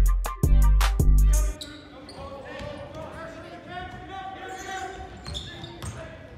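A hip-hop beat with heavy bass breaks off about one and a half seconds in, leaving the live sound of an indoor basketball game: a ball dribbling on a hardwood gym floor and voices echoing in the hall.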